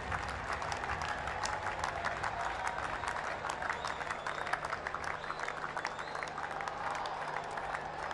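Applause: many hands clapping steadily, an ovation for a batter walking off after a fine innings.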